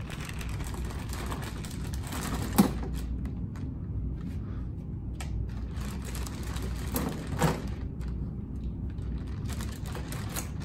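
A clear plastic zip-top bag rustling and crinkling as barber tools are packed into it, with two sharp clicks of items knocking together, one about two and a half seconds in and one about three-quarters of the way through. A steady low hum runs underneath.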